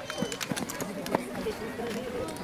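Several people's voices talking and calling out at an outdoor athletics track, some high and gliding like children's calls, with scattered short sharp clicks and taps among them.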